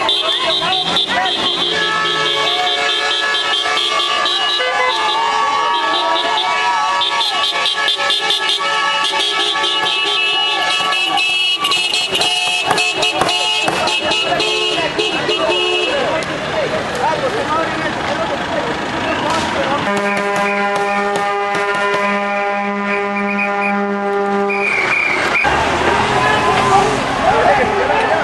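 Several vehicle horns blowing long, held blasts that overlap, then a single horn held steady near the end, with voices underneath.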